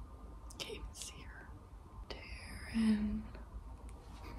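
A woman whispering: a few soft breathy sounds about a second in, then a quiet laugh near the end as she starts to whisper a question.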